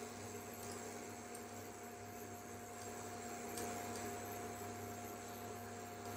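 Induction cooktop heating a pan: a faint, steady electrical hum with a thin steady whine.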